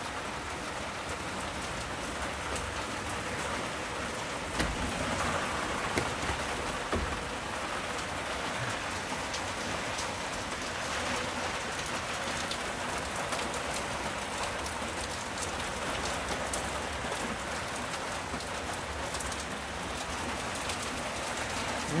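Steady rain falling on a garden and the house, a continuous patter with scattered sharper drip ticks.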